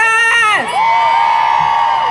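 High-pitched whooping shouts through a public-address system over rally crowd cheering. A loud shout drops off about half a second in, then a long, steady whoop follows.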